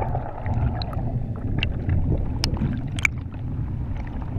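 Muffled water movement heard through a camera in the water: a low rumble with scattered sharp clicks, the loudest about two and a half and three seconds in.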